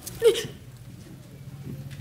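A woman's single short sob, one catch of the voice falling in pitch about a quarter second in, then quiet over a faint low hum.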